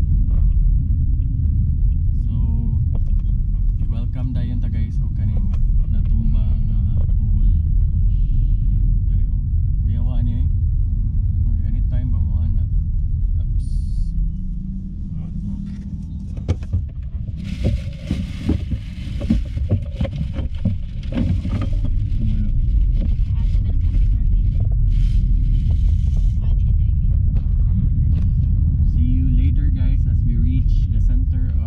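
A car driving on a road, heard from inside the cabin: a steady low rumble of engine and road noise. For a few seconds around the middle the rumble eases and a brighter hiss comes in, then the rumble returns.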